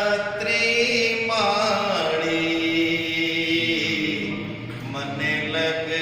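Devotional mantra chanting, sung in long held notes that glide slowly from one pitch to the next.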